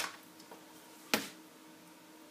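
Small plastic robot-arm parts and a screwdriver being handled on a table: two sharp clicks, one at the start and a louder one about a second in.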